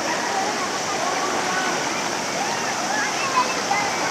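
River water rushing steadily over rocks, with faint voices of people talking and calling in the distance.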